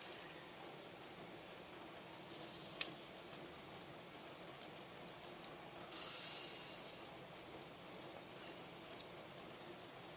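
Syringe forcing cleaning fluid into a clogged Canon inkjet printhead: mostly faint, with one small click about 3 s in and a short hiss about 6 s in as the plunger is pushed down hard against the blockage.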